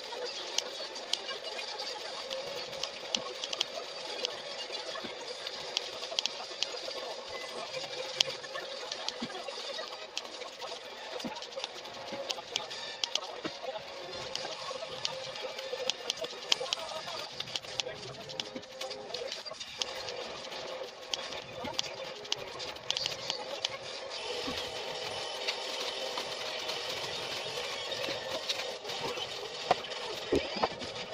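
Scissors cutting corrugated cardboard into small pieces: a run of short, sharp snips repeated throughout.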